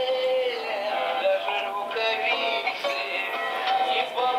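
Recorded chanson-style song playing: a sung lead vocal melody over an instrumental backing track.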